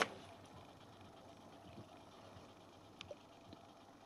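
Technics SL-PG300 CD player loading and reading a disc: a knock as the disc drawer shuts at the very start, then faint mechanism noise with a light click about three seconds in as it reads the disc's contents.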